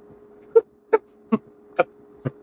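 A man's short whimpers, four in quick succession about two a second, over a faint steady hum.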